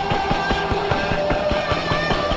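Heavy fuzz rock music: a fast, steady drumbeat under sustained, held guitar notes.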